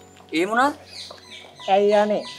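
Two short pitched calls: one about a third of a second in that rises and falls quickly, and one near the end that holds a level pitch and then drops.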